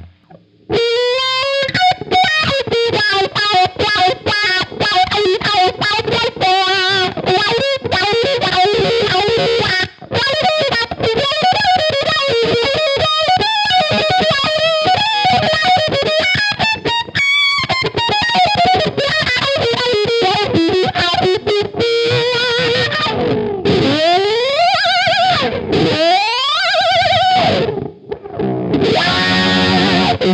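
Solo electric guitar through a high-gain amp simulator with plate reverb, playing a fast distorted lead line with no other instruments. Partway through a wah effect is added, and near the end the pitch slides up and down in long glides.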